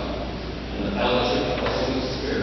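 Indistinct speech over a low, steady hum.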